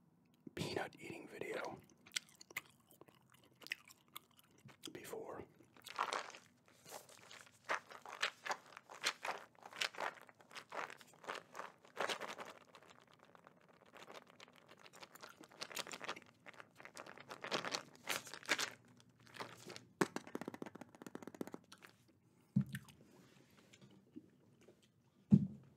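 A plastic jar of dry-roasted peanuts handled and turned close to the microphone, the peanuts rattling and crunching inside in short irregular bursts, with gum chewing. A soft low knock near the end.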